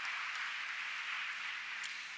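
Audience applauding, a steady patter of many hands clapping that eases off slightly toward the end.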